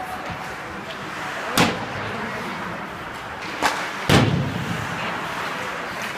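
Ice hockey play in an indoor rink: three sharp knocks of stick, puck and boards, about a second and a half in, about three and a half seconds in and half a second later, the last the loudest and boomiest, over a steady rink hum with voices.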